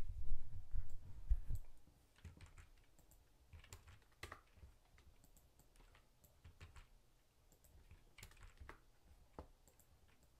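Typing on a computer keyboard and clicking a mouse: scattered, irregular light taps. There are heavier low knocks in the first second and a half.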